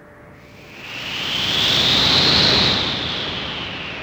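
A whoosh sound effect: a swell of rushing noise that rises, peaks about two seconds in, and fades away, its hiss sweeping up and then back down.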